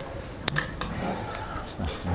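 A few sharp knocks close to the microphone about half a second in, as someone moves right past the recording device, followed by low voices of people in the room.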